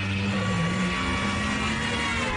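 Car engines running hard at speed: a steady drone that dips slightly in pitch about half a second in.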